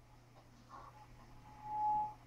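A lull with faint background hum, then a single pure steady tone, like a beep or whistle, that starts about halfway through and holds for about a second.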